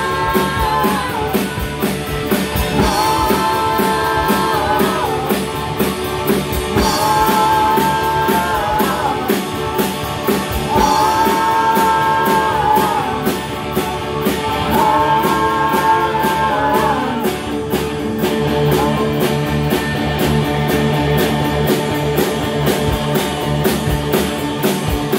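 Rock band playing live: drum kit with fast cymbal strokes, electric guitar and bass, with a long held high note coming back about every four seconds. Near the end the held notes stop and a heavier low bass part takes over.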